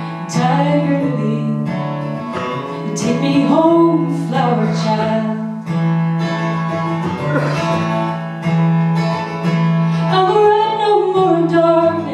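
A woman singing a song to her own acoustic guitar, strumming steadily under the vocal line, performed live.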